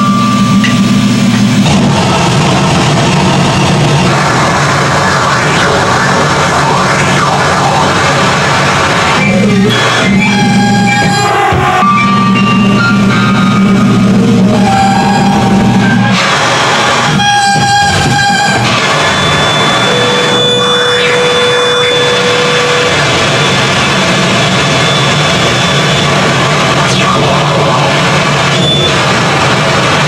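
Harsh noise music played live: a loud, dense wall of distorted noise over a low drone. High held tones cut in and out at changing pitches, and the low drone breaks off briefly a few times.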